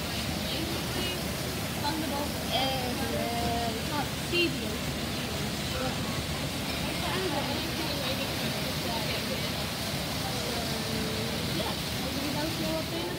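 Tropical cyclone wind and heavy rain making a steady, very loud rushing noise, with faint voices in the background at times.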